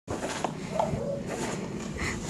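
German shepherd leaping and snapping its jaws at snow tossed from a shovel: a sharp clack of teeth about half a second in, over a steady rushing noise.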